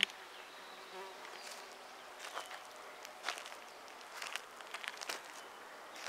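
Faint, steady buzzing of a flying insect, with a few soft clicks and rustles scattered through it.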